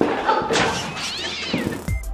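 A loud comic sound effect in the edit. It starts with a sudden burst, goes into a wavering high cry, and ends with a quick slide down in pitch.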